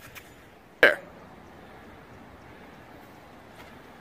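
A man's single short vocal exclamation about a second in, over faint steady outdoor background noise.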